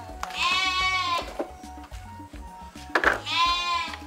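Two goat-like bleats with a quavering pitch, each just under a second long, one near the start and one about three seconds in, over background music with a steady low beat.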